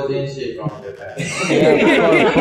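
Men talking and chuckling, louder and busier from about one and a half seconds in.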